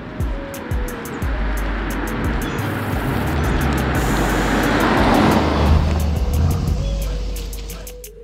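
A Mercedes-AMG E63 S sedan's twin-turbo V8 and tyres passing by. The sound builds to a peak about five seconds in, then fades, under background music with a steady beat.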